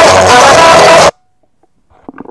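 Very loud, distorted noise with faint steady tones running through it, cutting off suddenly about a second in and followed by near silence.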